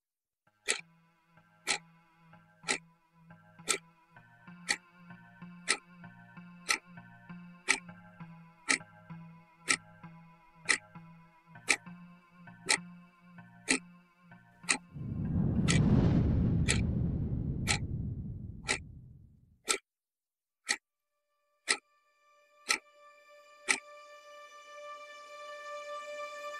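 Clock ticking about once a second over a faint low drone in a suspense soundtrack. About fifteen seconds in, a deep rumbling swell rises and dies away over some four seconds. The ticking stops a few seconds later as held music notes come in near the end.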